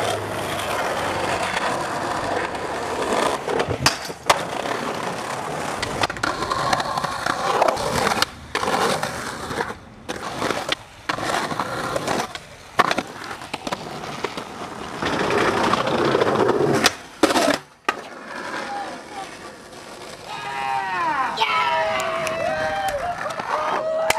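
Skateboard wheels rolling on asphalt and concrete, broken again and again by sharp pops and clacks as the board is snapped and landed. Near the end, voices call out.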